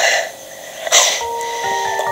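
Two short, hard, hissing breath bursts from a man's mouth, one at the start and one about a second in. Background music with steady chiming notes comes in just after the second burst.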